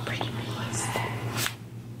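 Hushed, whispered talking over a low steady hum, with one sharp click about one and a half seconds in.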